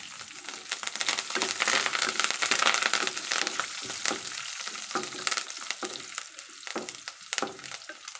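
Hot oil sizzling and crackling in an aluminium kadai as dried red chillies, garlic cloves and curry leaves fry in a tempering, stirred with a wooden spatula. A steady hiss full of small pops, a little louder in the first half.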